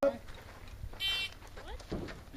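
Electronic shot timer giving its short, high-pitched start beep about a second in: the start signal for the shooter to draw and begin the stage.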